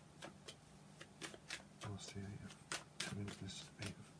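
A tarot deck shuffled by hand, a quiet run of soft, irregular card flicks and slaps.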